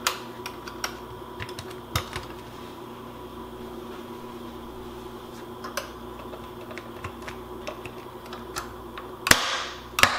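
Light clicks and clacks of a glass slow-cooker lid being seated and its hinged handle and wire latch clips snapped into place. There are a few sharp knocks near the start and one about two seconds in, then scattered ticks, and the loudest clack comes near the end.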